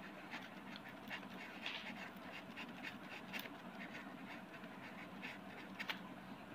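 Faint, irregular scratching of a ballpoint pen writing a short label on paper laid over a thermocol sheet.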